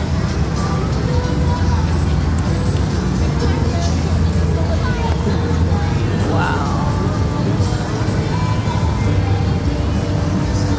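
Busy city ambience: a steady traffic rumble with background voices and music mixed in, and a brief rising-and-falling tone about six and a half seconds in.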